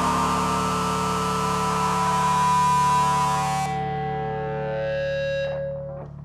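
A rock band's final distorted electric guitar chord, played through effects, held and ringing out. The noisy top end stops about two-thirds of the way through, and the held notes die away near the end, leaving a steady low amplifier hum.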